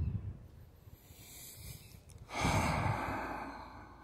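A man breathing close to the microphone: a faint drawn-in breath, then a long, rushing exhale starting a little past two seconds in.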